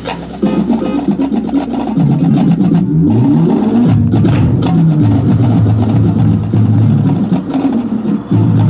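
High school marching band playing on the field: sustained low brass chords with a rising glide in the low notes about three seconds in, over rapid mallet-keyboard and drum hits from the front ensemble.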